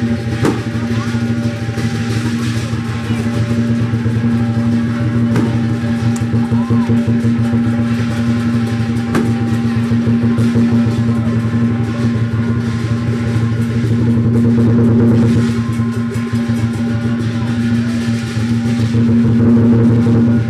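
Chinese lion dance percussion: a large drum beaten in fast, continuous strokes with clashing cymbals, keeping up a steady driving rhythm.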